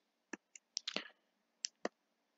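Faint, sharp clicks, about six in under two seconds and some in quick pairs, from a computer pointing device as the digital marker tool is picked back up.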